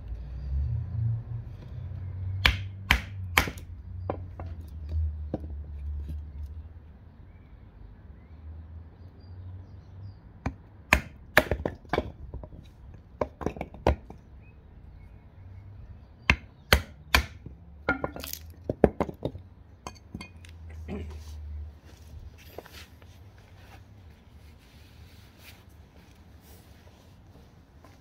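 Sharp wooden knocks of a Caleb Cox Tracker knife being driven into a small upright log to split it, coming in quick groups of two or three with pauses between.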